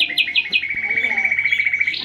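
A bird call: four quick chirps, each falling in pitch, followed by a fast, even trill held on one high pitch for over a second.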